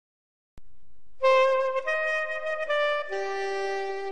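Saxophone playing a slow melody of long held notes that step from one pitch to the next, coming in about a second in after a soft click.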